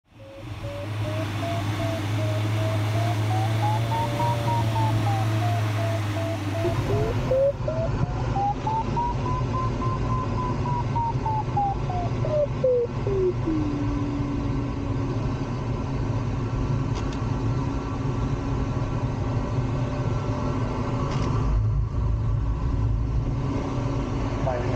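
Glider variometer beeping, its pitch rising and falling as the climb rate changes in lift, then turning a little past halfway into a continuous low tone, the vario's signal for sink. Underneath, the steady rush of airflow around the cockpit.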